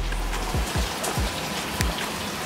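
Steady rain falling, a dense hiss, with deep bass kicks falling in pitch in the manner of a trap beat sounding under it about every half second.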